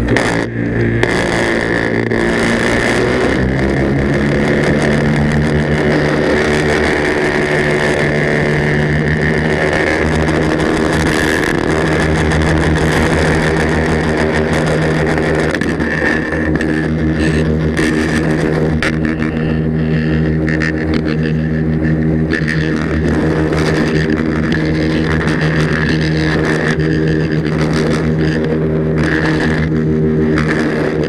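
Powered paraglider's engine and propeller running steadily in flight, the pitch shifting slightly in the first few seconds and then holding even.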